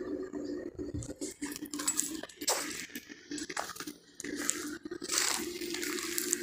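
Footsteps over loose stones and dry debris, with irregular small clicks and clinks of rock underfoot, over a faint steady hum.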